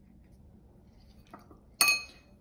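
A single sharp, ringing clink near the end, a paintbrush knocking against a hard container, with a faint small knock just before it.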